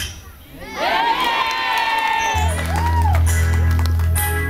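A high voice holds a long, slightly wavering note, with a crowd cheering. About halfway through, a deep steady bass note comes in under it as music starts.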